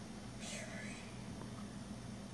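A short, faint whisper about half a second in, over a steady low hum.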